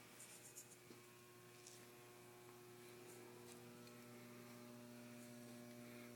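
Near silence: a faint, steady electrical mains hum, with a few faint ticks in the first two seconds.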